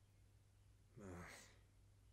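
A man's weary sigh, "ugh", about a second in, falling in pitch, over a faint steady low hum.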